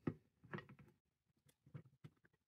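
A few faint clicks and taps of metal parts being handled as a clevis is fitted onto the end of a pneumatic cylinder's rod; otherwise near silence.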